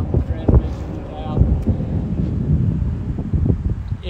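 Wind buffeting the microphone: a loud, uneven low rumble, with a few brief scraps of speech.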